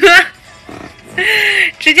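A woman's stifled laugh behind her hand: a half-second breathy, hissy exhale with a faint voice in it, between bits of her speech.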